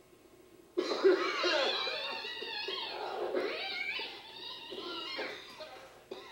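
Cartoon soundtrack playing through the television's speaker: lively character voices with animal-like vocal sounds cut in suddenly about a second in and carry on.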